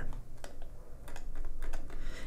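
Light, irregular clicking from someone working a computer: a quick run of small key or button clicks, several a second.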